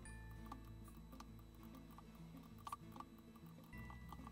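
Quiet background music with held tones, with a few soft clicks scattered through it as squares of the pattern are filled in on the computer.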